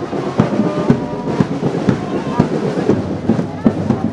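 Drums beating a steady marching rhythm, about two strokes a second, over the chatter of a crowd.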